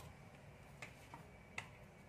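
Near silence with about three faint, short clicks as a hand handles multimeter test probes and a small disc thermistor on a desk, the last click the loudest.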